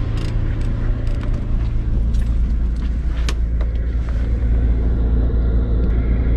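Diesel air heater running with a steady low hum, its note dropping to a lower hum about a second and a half in as it switches into its low setting. Scattered light clicks and knocks over it.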